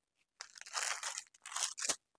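Crisp saree fabric rustling and crinkling as folded sarees are handled and set down, in two spells, the second ending in a sharp crackle.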